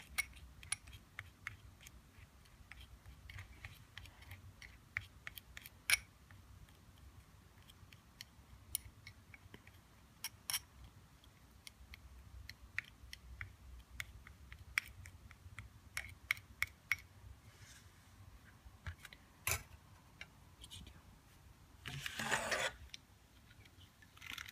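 Metal spatula clicking and scraping against a porcelain evaporating dish while ammonium chloride and calcium hydroxide powders are stirred together: many light, irregular clicks. Near the end comes a louder rustling scrape of about half a second.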